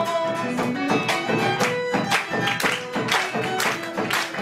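Live acoustic folk music: strummed guitars and a violin playing an instrumental passage, with a steady strummed rhythm.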